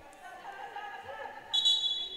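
A referee's whistle gives one sharp, steady, high blast about one and a half seconds in, over the murmur of a gym crowd and faint voices.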